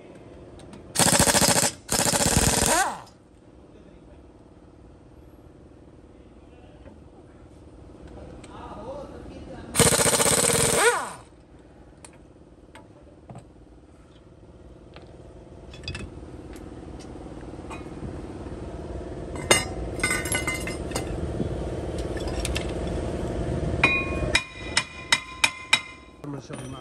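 Pneumatic impact wrench firing in short loud bursts, two back to back about a second in and one more about ten seconds in, undoing the brake caliper bolts. A steady hum grows slowly louder behind it, and several sharp metallic clinks come near the end.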